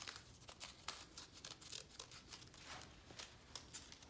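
Small scissors snipping through folded printed paper to cut out petals: a run of faint, irregular snips.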